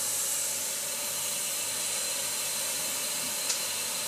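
A steady spraying hiss, with one faint click near the end.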